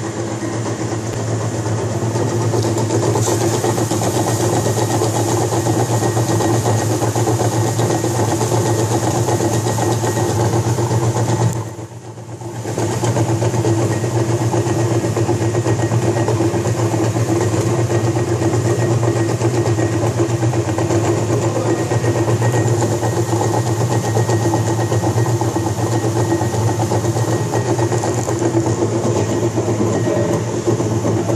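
T-MAX GSL-series plastic granulator running steadily, its electric-motor-driven cutting rotor grinding polypropylene sack twine into granules with a constant hum and a gritty cutting noise. The sound drops briefly about twelve seconds in, then returns to full level.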